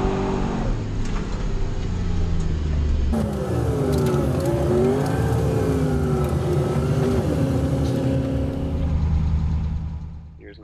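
Nissan 240SX drift car's engine heard from inside the stripped, caged cabin, its revs falling and climbing again and again through the run. About three seconds in the sound changes abruptly to another run, where the engine note dips and then rises once more.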